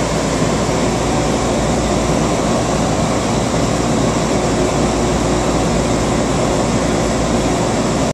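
Steady running noise inside a Newark AirTrain car as it travels along its guideway, an even hum and rumble with no distinct knocks or changes.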